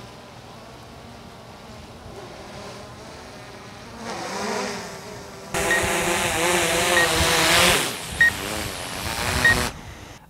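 DJI Mavic 2 Pro quadcopter's propellers whining, faint and distant at first, then suddenly loud and close from about five and a half seconds in as it hovers low overhead coming in for a hand catch, the pitch wavering as the motors adjust. A short high beep sounds about once a second during the close part.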